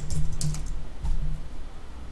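Computer keyboard being typed: a few quick keystrokes, most of them in the first half second or so, over a steady low hum.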